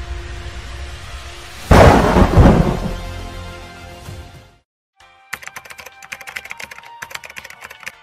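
Rain hiss with a low rumble, then a loud thunderclap about two seconds in that rumbles and fades over nearly three seconds. After a brief silence, fast computer keyboard typing begins.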